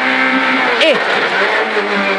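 Peugeot 208 R2 rally car's naturally aspirated 1.6-litre four-cylinder engine, heard from inside the stripped cabin, running hard as the car accelerates out of a tight right-hand bend.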